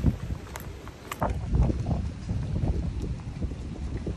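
Wind buffeting the phone's microphone as a rough, uneven low rumble, with a few sharp knocks in about the first second and a half.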